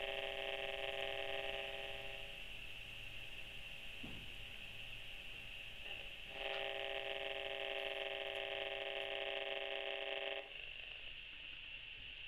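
HF35C RF meter's loudspeaker giving out a steady electronic buzz from the garage door opener's radio signal it is picking up; the louder the buzz, the stronger the received radiation. It gets quieter about two seconds in, comes back louder about six and a half seconds in, and drops sharply about ten and a half seconds in.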